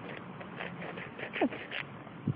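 Fingers scratching and rustling in loose garden soil and dry grass, a run of short soft scrapes, with one brief falling tone a little past halfway.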